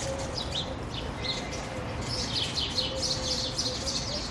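Small birds chirping in many quick, high-pitched notes, busiest in the second half, over a low steady background hum.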